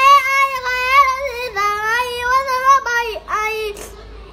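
A young child singing in a high voice: one long, drawn-out wavering phrase of nearly three seconds that steps down in pitch partway through, then a short sung note.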